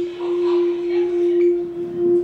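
A steady, unchanging hum at one pitch from the playback speakers, with faint voices from a film soundtrack in the first second.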